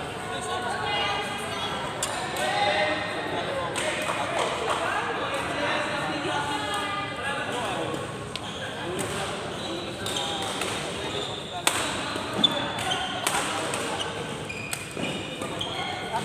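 Badminton rally: sharp cracks of rackets hitting the shuttlecock, starting about twelve seconds in, with brief high squeaks of shoes on the court floor. Chatter of voices in a large echoing hall fills the first half, between points.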